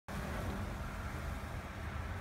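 Steady low background rumble with a faint, even hum, unchanging and without speech.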